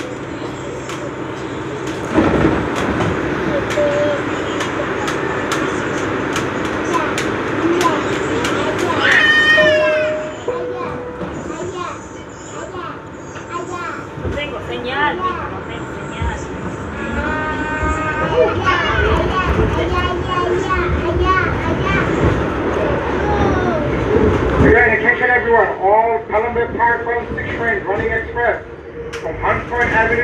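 Indistinct chatter of passengers inside a stopped subway car, children's voices among them, over the train's background noise. The voices grow louder and busier near the end.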